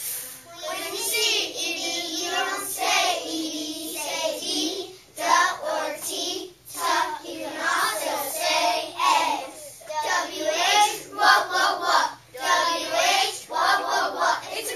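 A group of young children chanting a rhythmic phonics chant in unison, in short phrases, with hissy consonant sounds such as "ph" standing out.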